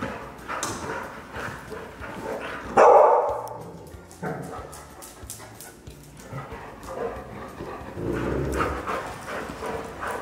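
Dogs making playful noises, loudest with a single bark about three seconds in, amid quieter, irregular yips and vocal sounds.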